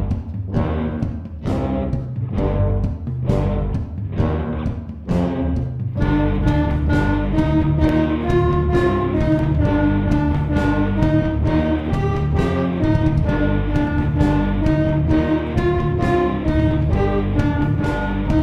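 School band playing: a drum kit beating about twice a second with tuba, electric bass and electric guitar. About six seconds in, a wind section of flutes, trombone and trumpet comes in with held melody notes over the continuing drums.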